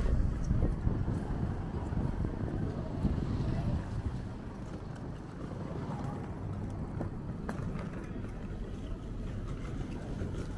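City street ambience: a low traffic rumble, louder for the first few seconds and then steady, with passersby talking.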